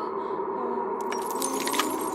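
A sustained synthesised drone holding steady tones. About a second in, a rapid run of metallic jingling and clinking joins it.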